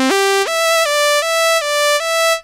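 Minimoog monophonic synthesizer playing a quick single-note melody in a bright tone rich in overtones. The notes change about three times a second: a low note at first, then a jump up about half a second in, after which the line moves between two neighbouring notes.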